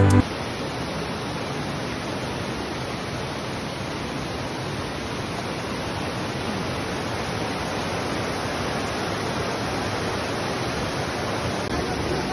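Steady rush of river water running over boulders and small cascades.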